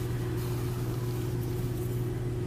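A steady low background hum that holds one even pitch throughout.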